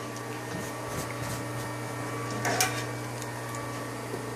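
A steady low hum under a few light clicks and a short rustle about two and a half seconds in: handling noise from a phone being carried and swung around.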